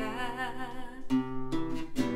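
A woman's held vocal note, wavering with vibrato over a nylon-string classical guitar, ends about a second in; the guitar then carries on alone with a few plucked notes.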